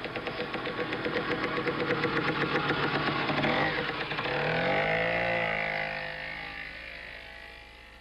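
A motor vehicle engine running with a fast, even beat. About halfway through, the beat gives way to a smoother tone that rises in pitch, then the sound fades away toward the end.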